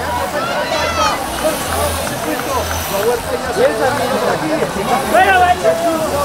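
Crowd of roadside spectators shouting and cheering, many voices at once, with one voice shouting "¡Vuela!" near the end.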